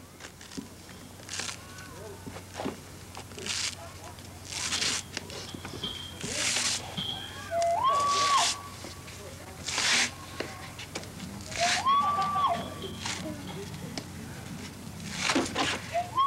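Layers of pounded black ash being peeled off the log in long splints: a series of short tearing rips every second or two. Three short, held high-pitched calls sound about four seconds apart.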